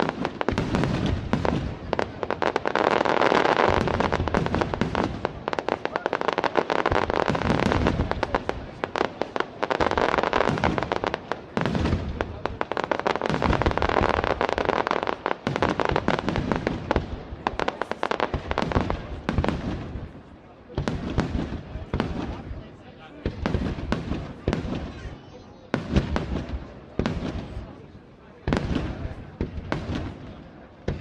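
Fireworks display: aerial shells bursting in a dense, overlapping run of bangs and crackle for about the first twenty seconds, then in separate short clusters of bangs with brief lulls between them.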